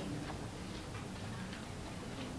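Quiet room tone with faint ticks.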